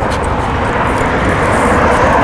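A car driving past on the street: a rushing tyre and engine noise that grows louder toward the end.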